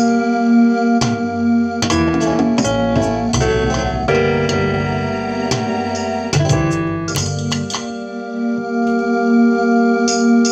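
Keyboard music: a low note and chords held steadily, with a busier run of quick notes through the middle.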